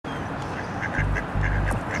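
Mallard ducks giving several short, soft quacks, with a low rumble coming in about a second in.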